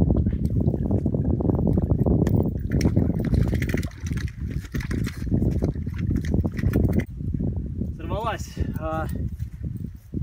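Wind buffeting the microphone, a heavy, fluttering low rumble, mixed with rustling of reeds and grass as a man moves among them. Near the end the rumble eases and a man's voice gives a couple of short sounds that rise and fall in pitch.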